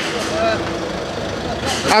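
A man's voice, faint and distant, saying a brief phrase about half a second in, over a steady low outdoor rumble.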